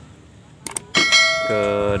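Subscribe-button overlay sound effect: a couple of soft mouse clicks, then a bright bell ding about a second in, followed by a steady pitched tone near the end.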